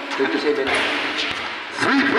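Voices shouting and talking in an echoing covered basketball court, swelling into a noisy burst of overlapping shouting for about a second in the middle, as a three-point basket is scored.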